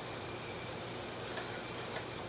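Steady faint high hiss of background noise, with one soft tick about one and a half seconds in.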